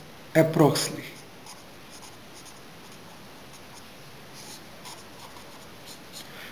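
A brief spoken word about half a second in, then a pen writing faintly on paper: scratching strokes as words are written and a line is drawn under the answer.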